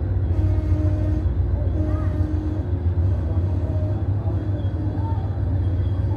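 Steady low rumble of passenger train cars rolling past close by.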